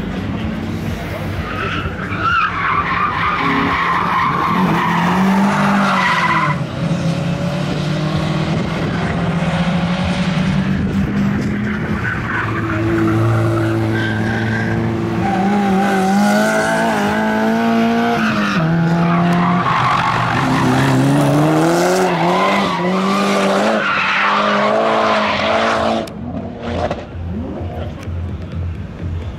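Cars driven hard on a race track: engines revving up and down through the gears, with tyres squealing as they slide through the corners.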